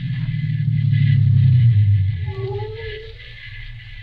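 Radio sound effect of a car engine running and swelling, then dying away as the car pulls up and stops. A faint whine comes just as it stops.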